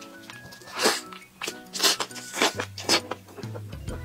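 Background music playing steadily, with about five short, wet chewing and biting sounds from a person eating a glazed roast chicken leg.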